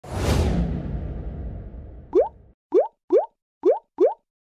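Video-editing sound effects: a whoosh with a low rumble that dies away over about two and a half seconds, then five quick rising 'bloop' pops about half a second apart, the kind laid under list lines popping onto a title card.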